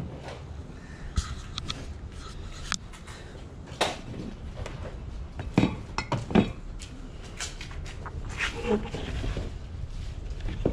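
Glass dishes and glassware clinking and knocking against each other as pieces are handled and set down on a table: a scatter of sharp, separate clinks.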